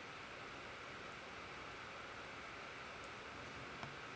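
Faint steady hiss of room tone, with three faint clicks: one about a second in and two near the end.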